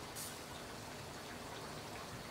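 Faint, steady sizzling and crackling from a charcoal grill with thick ribeye and filet steaks cooking on it.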